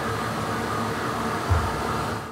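Radiation-therapy linear accelerator running with a steady whir and hum, a low thump about one and a half seconds in.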